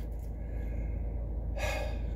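A man's short, sharp intake of breath about one and a half seconds in, over a steady low rumble inside the car.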